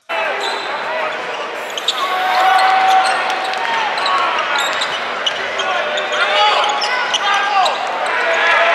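Live basketball game heard from the arena stands: crowd chatter and voices echoing through the hall, with the ball bouncing on the hardwood court and scattered sharp knocks.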